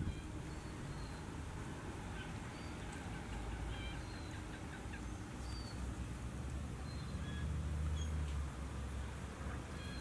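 Scattered short bird chirps over a steady low rumble, the rumble swelling a little around seven to eight seconds in.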